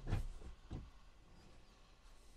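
Three soft knocks: a sharper one just after the start, then two weaker, duller ones within the next second.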